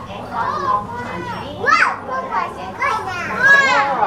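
Children's voices, with two loud, high-pitched excited calls, one about halfway through and a longer one near the end, over a spoken announcement.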